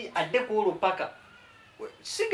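A man talking in Luganda in a raised, animated voice for about a second, then a pause.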